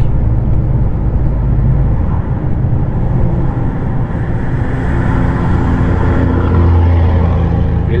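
Steady engine and road rumble inside a moving heavy truck's cab on a highway. Oncoming trucks pass close by in the other lane, and the rumble swells over the second half.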